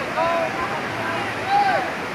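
Steady rush of river water, with a couple of brief voices calling out, one near the start and one about one and a half seconds in.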